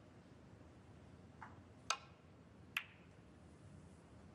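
Snooker break-off: a soft click of the cue tip on the cue ball, then two sharp clicks of ball striking ball as the cue ball clips the pack of reds, in a quiet arena.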